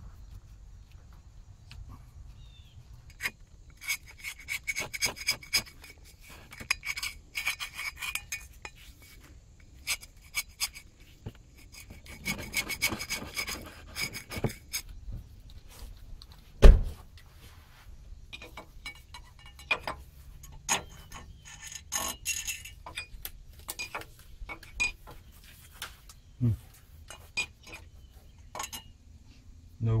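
Metal parts scraping, rubbing and clicking as a fan and pulley are worked onto a 1967 Ford F100's water pump hub, with one loud knock a little past halfway.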